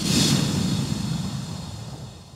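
Cinematic logo-reveal sound effect: a whoosh and low rumble that hit suddenly and fade away steadily.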